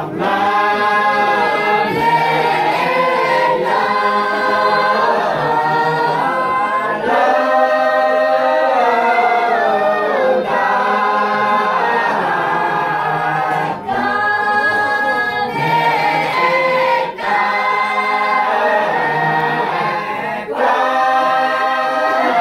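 A group of villagers singing together unaccompanied, many voices holding long notes in unison phrases, with short breaks for breath between phrases.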